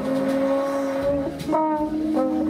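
Live jazz band playing long sustained notes, a second note entering about one and a half seconds in.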